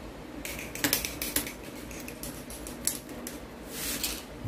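Small plastic model-kit parts being handled and fitted, giving sharp clicks and taps: a quick cluster about a second in, then scattered single clicks, with a brief rubbing hiss near the end.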